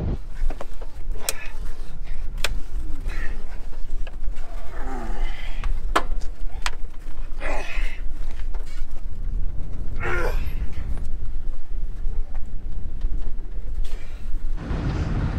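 Men grunting and shouting with effort as they lift and push a side-by-side UTV up a rock ledge: several short strained cries, a few sharp knocks, and a steady low rumble underneath.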